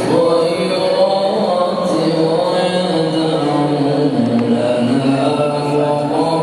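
A man's unaccompanied melodic Islamic recitation, chanted in long held notes that glide slowly up and down in pitch.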